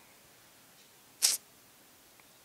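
A single quick sniff, a short sharp hiss through the nose about a second in, against a quiet room.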